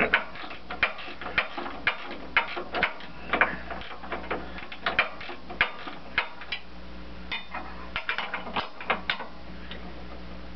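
Ratchet wrench clicking in a run of short back-and-forth strokes as a nut is backed off the pivot bolt of a tractor's cam-plate linkage, with a brief pause about seven seconds in.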